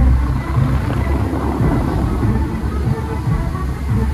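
Dubai Fountain show: the rushing and splashing of the fountain's water jets over the show's music, with a heavy low rumble throughout and a surge of rushing water about a second in.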